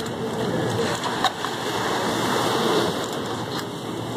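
Steady rushing noise of surf washing over shoreline rocks, with a brief click about a second in.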